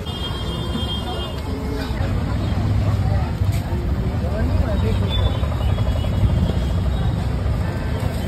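Busy street ambience: background voices over a low, steady rumble that grows stronger about two seconds in.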